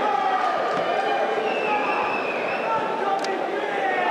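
Crowd of spectators in a large hall, many overlapping voices talking and calling out at once.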